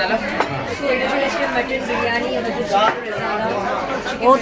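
Several people talking at once in a busy restaurant dining room: overlapping conversation with no single clear voice.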